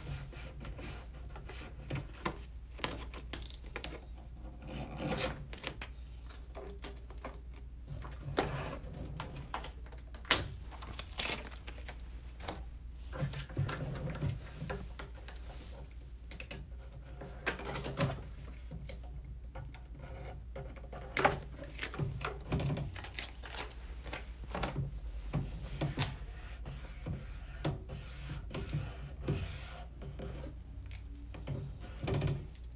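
Hands rubbing, pressing and folding 3M Di-noc vinyl film around the edge of a wooden drawer front: irregular scratchy rubbing and crinkling, with scattered clicks and a few sharper knocks, over a steady low hum.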